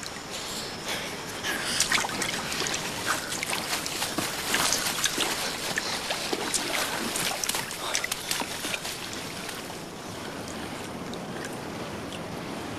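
Water running and splashing steadily, with many small, sharp splashes scattered through it.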